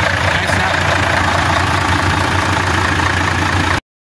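Truck engine idling steadily, heard close in the engine bay with a constant low hum and a loud hiss; it cuts off abruptly near the end.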